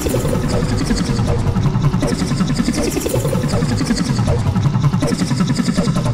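Many overlapping, distorted copies of a cartoon logo's soundtrack played at once: a loud, dense jumble with a heavy low rumble and no clear tune.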